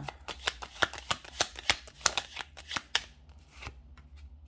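A deck of fortune-telling cards being shuffled by hand: a quick run of sharp little card snaps and slaps, thinning out and fading near the end.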